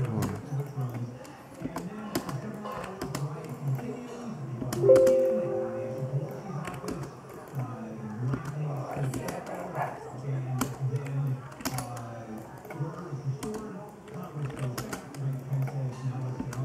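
KFI AM 640 talk-radio broadcast heard through a speaker in a small room: a man's voice talking, with a short steady tone of a few pitches about five seconds in. Light clicks, like computer keys, run through it.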